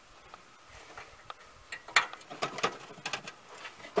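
Light metallic clicks and taps of a cotter pin being worked into the deck-hanger rod of a riding lawn mower. They come as a scattered run starting a little under two seconds in, the loudest near the start of the run.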